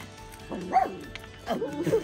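A small puppy barking twice in short high yips, about half a second in and again near the end, over background music.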